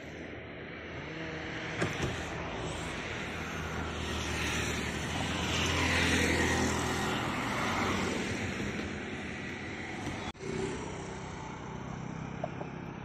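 Road traffic passing on a highway: a car and a motorbike drive by. Their engine and tyre noise grows to its loudest about halfway through and then fades, with a brief break just after ten seconds.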